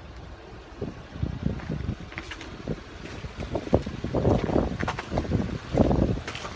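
Wind buffeting the microphone in irregular low rumbling gusts, growing stronger in the second half.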